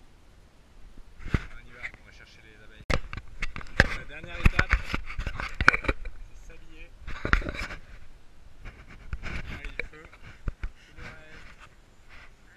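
Indistinct talking with many sharp clicks, knocks and scrapes close to the microphone, busiest between about 3 and 8 seconds in.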